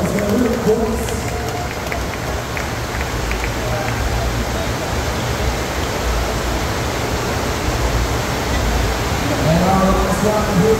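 Steady rush of water from a FlowRider double-jet sheet-wave machine, a thin sheet of water pumped up and over the padded riding surface, with a low rumble underneath.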